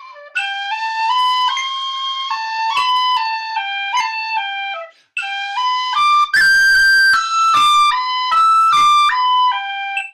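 Tin whistle playing the opening phrase of a tune in 6/8 at a slow practice tempo: a run of clear notes stepping up and down, with a short break for breath about five seconds in, then a second stretch that climbs to higher notes.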